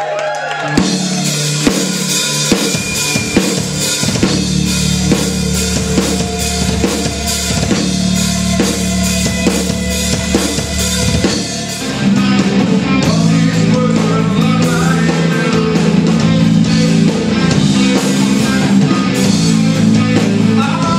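Live rock band playing, with drum kit, bass and guitar. The drums start about a second in, and the full band comes in louder at about twelve seconds.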